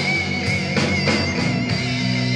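Live band music: a semi-hollow electric guitar played through an amplifier over bass and a drum kit.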